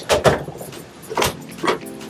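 Short knocks and metallic rattles of a wooden cabinet door and its metal hinges being worked free and lifted off, three in all, the first the loudest.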